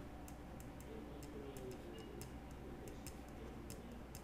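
Faint, irregular light clicks of slow typing on a computer keyboard, about two or three a second.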